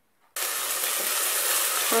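Chopped onion frying in hot oil in a stainless-steel pot: a steady sizzle that starts abruptly about a third of a second in.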